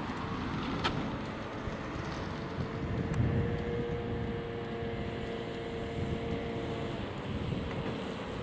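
Road traffic: a car driving past, with wind on the microphone. A steady hum stands out from about three to seven seconds in.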